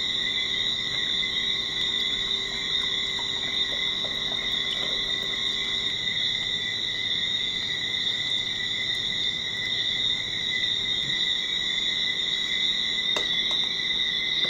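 Steady high-pitched chorus of night insects, going on without a break.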